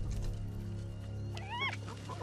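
A spotted hyena gives one short, high whine that rises and falls, about one and a half seconds in. It sounds over a low, steady musical drone.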